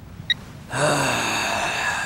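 A short sharp click, then a young man's long, heavy sigh that tails off slowly.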